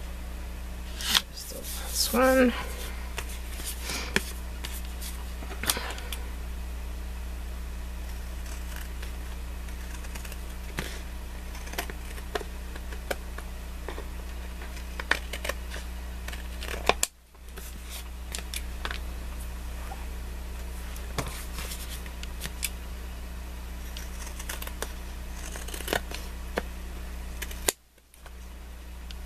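Scissors cutting and trimming cardstock: a string of short snips and paper-handling rustles over a steady low electrical hum. A brief hummed vocal sound comes about two seconds in.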